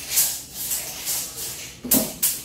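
Steel tape measure being pulled out, its blade running out of the case in two short, high-pitched hissing runs: one just after the start and one near the end.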